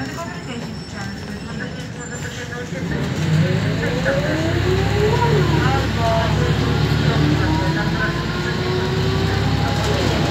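Volvo B10BLE city bus heard from inside the passenger saloon: its diesel engine runs steadily, then gets louder about three seconds in as the bus accelerates. Whines from the drivetrain climb in pitch, drop back once about five seconds in as the automatic gearbox shifts up, then climb again.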